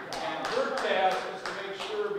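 A man speaking in a large hall, with about half a dozen sharp taps scattered unevenly through it.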